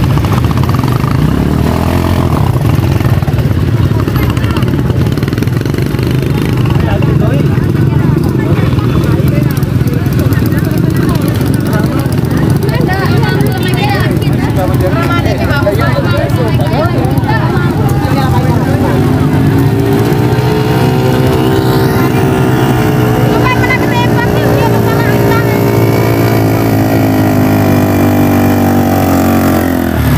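Several motor scooter engines running and idling amid a crowd's voices. About two-thirds of the way in, one engine rises in pitch and holds there for several seconds before dropping off near the end.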